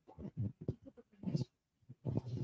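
Faint, indistinct voice away from the microphone, in short broken snatches.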